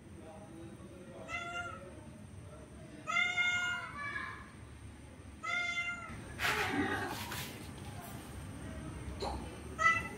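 Domestic cats meowing in long, drawn-out calls during a mating approach by a tom toward a female. There are four calls, the longest about three seconds in, and a short burst of noise comes in the middle.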